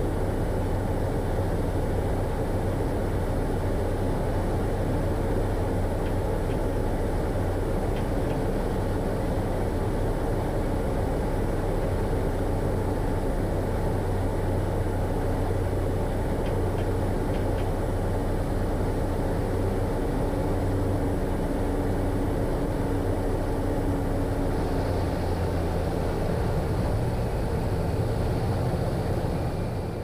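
Cessna 208 Caravan's PT6A turboprop engine and propeller heard inside the cockpit as a steady drone through the flare, touchdown and landing roll. The tone shifts slightly near the end.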